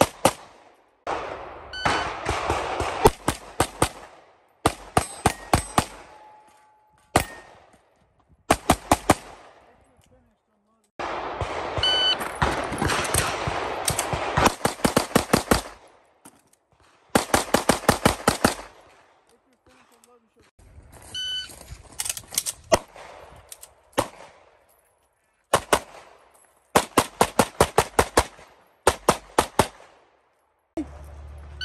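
Strings of rapid pistol fire from a 2011-pattern competition pistol: several quick groups of shots, each shot a fraction of a second after the last, broken by pauses of a second or more.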